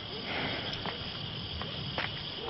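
Crickets chirring steadily as night ambience, with a brief soft rustle about half a second in.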